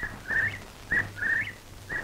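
A high whistled call, a brief note followed by a longer one that flicks upward at its end, repeated three times at about one-second intervals.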